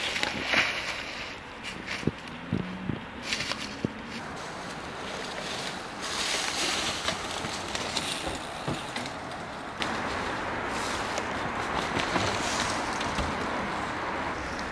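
Mountain bike tyres rolling over a dirt trail strewn with dry leaves, a steady noise that grows fuller later on, with a few knocks from the bike and ground.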